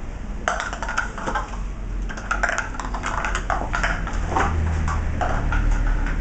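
A plastic cup knocking and clattering on a tiled floor as a beagle puppy carries it in its mouth and plays with it, in a run of irregular light clicks and taps.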